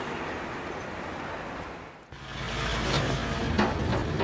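A truck engine running low and steady starts about halfway through, after a faint haze that fades away. A couple of short metallic knocks sound over it near the end, as work is done at the back of the flatbed tow truck.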